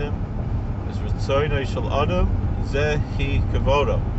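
Steady low rumble of a car heard from inside the cabin while driving, under a man's speech.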